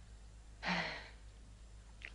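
A woman's single emotional sigh, breathy and brief, about half a second in, over a steady low hum.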